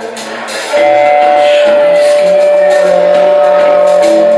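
Live rock band playing, with a single high note held dead steady from about a second in that rises above everything else.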